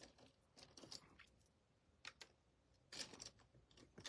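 Near silence with a few faint small clicks, and a brief soft noisy sound about three seconds in.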